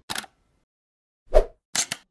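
A few short percussive sound-effect hits from a news intro: a brief click, then a low thump about a second and a half in, then two quick sharp clicks near the end, with silence between.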